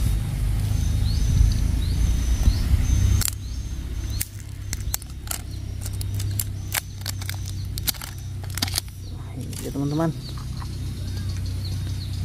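Sharp clicks and taps of two batteries and a plastic battery holder being handled as the batteries are fitted into a toy train, the clicks coming thick from about three seconds in. A low rumble fills the first three seconds, then drops away.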